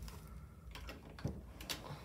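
A few faint, separate clicks and taps over low room noise.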